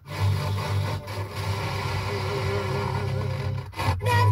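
Car FM radio tuned between stations, picking up a weak, noisy signal: a rough hiss and rasp with faint audio underneath. Brief mutes occur at the start and again just before the end, where the tuner steps to the next frequency.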